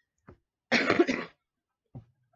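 A woman coughs once, a short harsh burst about a second in, with a faint tick just before it; she has a chest cold.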